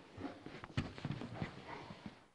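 Wrestlers' bodies and shoes thudding and scuffing on a wrestling mat as one rolls the other over, several soft knocks in a row.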